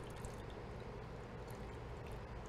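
Fish fumet mixed with lemon juice poured slowly from a bowl onto diced mackerel in a steel mixing bowl: a faint, steady trickle.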